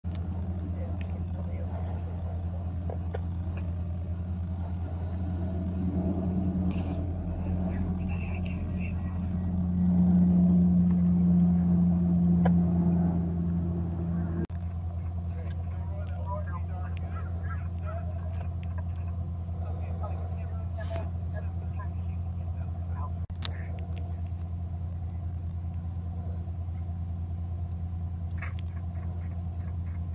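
A steady low rumble with faint distant voices. A louder low drone swells in about five seconds in and cuts off abruptly about halfway through.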